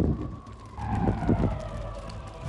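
Dramatic sound-effect hit for a burst of flames: a sudden low boom that rumbles on and slowly fades, with a high, wavering whine held above it.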